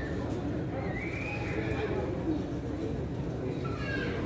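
Faint, indistinct voices over a steady low background rumble, with a short high call that rises and falls about a second in.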